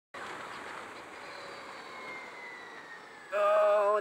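Motorcycle riding noise: steady wind and road rush with faint engine tones slowly falling in pitch. A man's voice starts loudly near the end.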